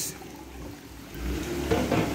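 Water from an aquarium return pipe hung above the surface, pouring and splashing into a small saltwater tank, a bit louder after about a second. The splashing ripples are meant to break up the oily film on the water's surface.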